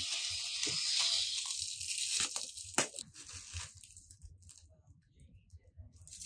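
Clear plastic packaging crinkling and tearing as furniture legs are unwrapped, densest in the first two seconds. Scattered rustles follow, with one sharp click about three seconds in, then it thins out.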